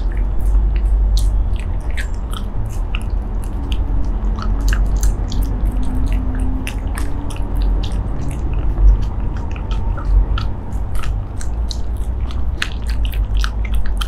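Shiba Inu chewing a squid-shred meat roll treat close to the microphone: irregular crisp crunches and clicks of teeth on the treat throughout, over a low background rumble.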